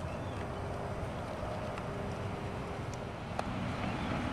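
Steady low outdoor rumble with wind on the microphone, a faint hum and a couple of light clicks.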